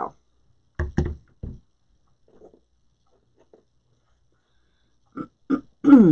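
A few short, low throat sounds from a woman, like grunts and the start of a throat-clear, separated by a long quiet stretch.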